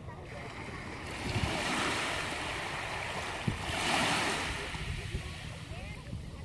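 Small ocean wave lapping up a sandy beach over washed-up beach grass: a rush of water that swells about a second in, is loudest about four seconds in, then fades as it draws back.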